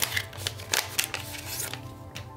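Paper packaging insert rustling and crinkling with irregular light clicks and scrapes as a black plastic Ringke Onyx phone case is slid out of it by hand. Soft background music plays under it.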